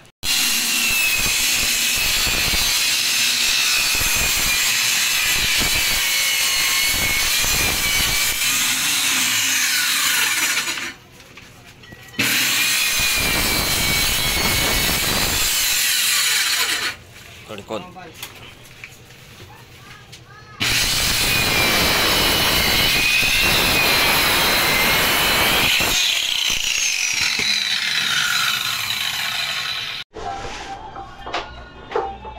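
Corded circular saw cutting through plywood sheets in three long runs, its motor whine wavering with the load. It stops briefly between runs, and after the last cut the motor winds down in a falling whine.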